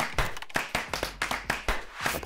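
Quick run of sharp clap-like hits, about six or seven a second, from a percussive section-transition sound effect.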